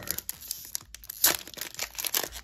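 Foil Yu-Gi-Oh! booster-pack wrapper crinkling and being torn open by hand: irregular crackles, with a sharper rip a little after a second in.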